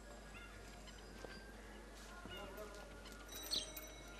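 Faint outdoor ambience of birds chirping and calling, with a louder burst of high calls about three and a half seconds in, over a low steady hum.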